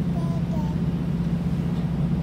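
Steady low hum and rumble of a passenger train running, heard from inside the carriage.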